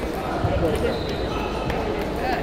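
Busy table tennis hall: a steady hubbub of voices, with scattered sharp clicks of table tennis balls bouncing on tables and bats at the neighbouring tables. The sharpest click comes about half a second in.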